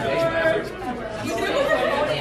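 Many people talking at once in a large room: overlapping, indistinct chatter.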